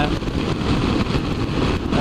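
BMW F650ST motorcycle at highway speed: its single-cylinder engine running steadily under a continuous rush of wind and road noise on the bike-mounted camera.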